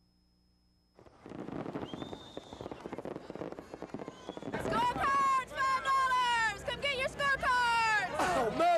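After a second of near silence, fireworks crackle and pop with a noisy crowd behind them. From about halfway through, loud cheering and shouting voices take over, with long held yells.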